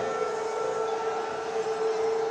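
A steady, sustained tone held at one pitch, like a horn or siren, over a background din of noise.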